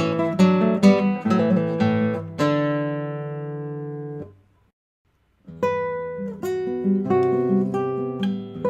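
Solo acoustic guitar: quick plucked notes, then a last chord that rings and fades out about four seconds in. After a second of silence a new piece begins with plucked notes and chords.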